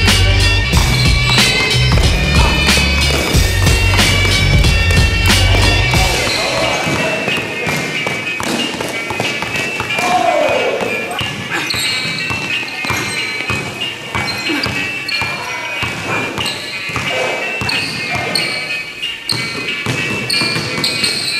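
Music with a heavy bass beat, which drops out about six seconds in. After that, a basketball is dribbled hard and fast on a gym floor in quick, irregular bounces while the music carries on more faintly.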